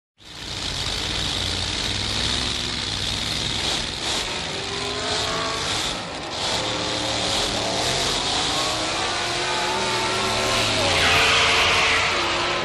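Hot rod engine sound effect opening a surf-rock record: an engine revving, its pitch climbing over several seconds, with a tire squeal near the end.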